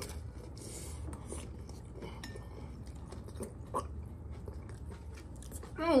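Chewing a crisp tostada topped with shrimp aguachile: a short crunch of the bite in the first second, then softer chewing with scattered small mouth clicks.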